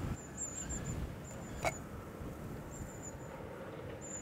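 Gusty wind buffeting the microphone outdoors, a steady irregular low rumble, with one sharp click about a second and a half in and a few faint, high, short chirps.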